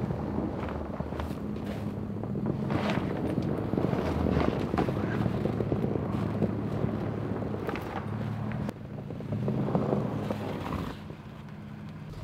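Tow vehicle's engine running low and steady while backing a boat trailer, with scattered clicks and crackles over it. The engine sound dips about nine seconds in and drops again near the end.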